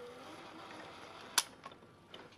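Opened 1966 AIWA TP-712 reel-to-reel transport running faintly in rewind, its reels driven through a makeshift rubber-band belt. About a second and a half in comes a single sharp click, after which the running sound goes quieter.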